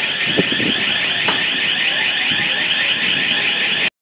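A loud, continuous alarm, high and steady in pitch with a fast, even warble, cutting off abruptly near the end.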